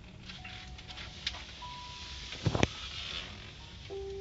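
Low steady rumble inside a slowly moving car, with a few sparse music notes over it and a double thump about two and a half seconds in.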